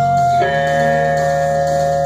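Electric guitar through an amplifier holding a long sustained note, moving to a lower held note about half a second in, over a steady low backing part.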